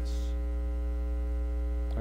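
Steady electrical mains hum: a low drone with a ladder of fainter, even overtones above it.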